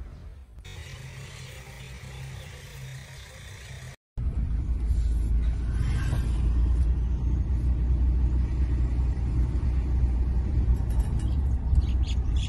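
A vehicle's engine rumbling low and steady, as from a safari bus on the move. It is quieter for the first few seconds, cuts out briefly about four seconds in, then returns louder and steady.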